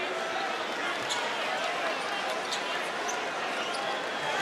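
Steady crowd murmur in an indoor basketball arena during a stoppage in play, with a few brief sharp high sounds over it.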